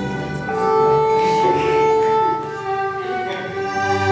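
Violin-led string music playing, with a long held note through the middle.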